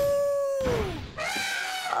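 A cartoon wolf's howl, done by voice: one long, steady call that falls away about a second in, followed near the end by a shorter, harsher cry.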